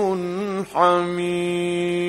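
Male Quran reciter chanting in the melodic mujawwad style: an ornamented, wavering vocal line, a brief break for breath just over half a second in, then one long steady held note.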